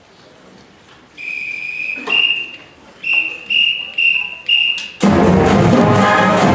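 A whistle count-off: one long blast about a second in, a second blast, then four short blasts about half a second apart, after which a large brass and saxophone pep band comes in loudly together near the end.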